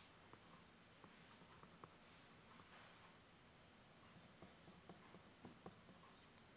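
Faint scratching of a graphite pencil on drawing paper in short shading strokes, with a quicker run of short, even strokes in the last couple of seconds.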